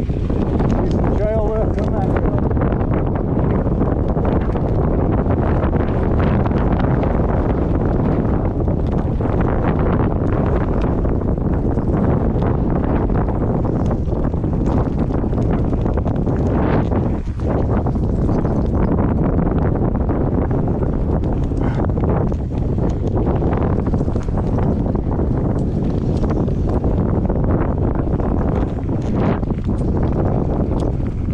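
Wind buffeting the microphone of a body-mounted action camera on a mountain bike riding down a dirt trail, over a steady rumble of tyres and frame rattle with frequent jolts from bumps. The loudness dips briefly once, about halfway.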